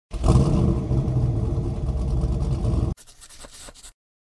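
Car engine running loudly, cut off suddenly about three seconds in, followed by a much fainter sound with a few clicks.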